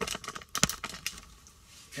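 A quick run of small clicks and knocks, one louder knock just after half a second in, from the glass and inner door hardware of a 2010 Mitsubishi Outlander front door being handled as the window glass is slid down.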